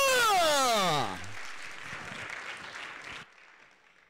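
Congregation applauding and cheering, with a loud whooping shout at the start that swoops down in pitch over about a second, then the applause carries on more quietly before cutting off abruptly near the end.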